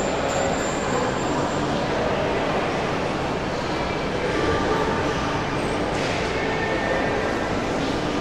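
Steady, even background rush of a large indoor mall atrium, such as air-conditioning and ventilation noise, with no distinct events.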